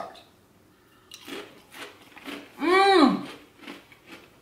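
Bites and chewing crunches of a baked cheese crisp (Cello Whisps), starting about a second in, with a hummed "mmm" whose pitch rises and falls in the middle.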